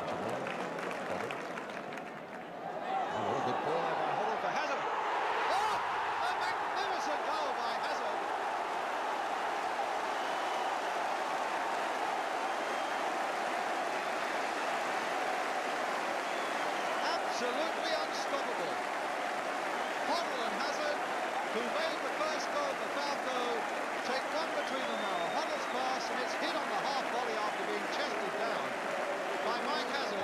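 Football stadium crowd cheering after a goal, swelling about three seconds in and holding steady, mixed with clapping.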